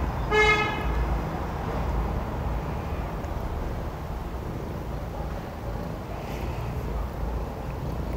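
A single short horn toot about half a second in, held on one steady pitch for under half a second, over a steady low rumble.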